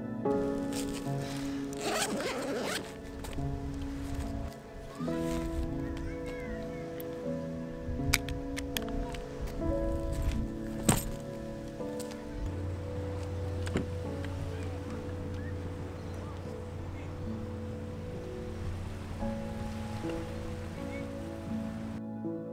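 Background music of slow sustained notes, over handling noise from camera gear: a zipper-like rasp about two seconds in and a few sharp clicks around eight and eleven seconds.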